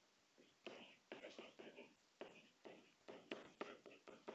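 Faint scratching and tapping of a stylus writing by hand on a pen display, in an irregular run of short, quick strokes.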